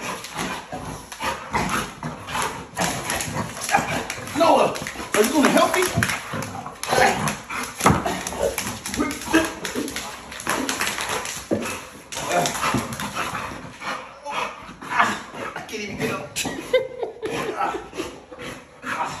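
Two dogs making play noises while they wrestle with a man on the floor, with scuffling and a man's voice mixed in.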